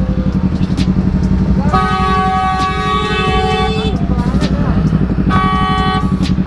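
Yamaha RX King two-stroke single-cylinder engine running steadily under the rider. A vehicle horn blares twice: a long blast of about two seconds, then another near the end.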